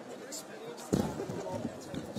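A single heavy thump about a second in, over the murmur of people talking.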